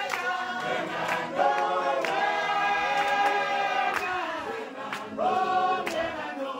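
A crowd of people singing a prayer hymn together in long held notes, with short breaks between phrases.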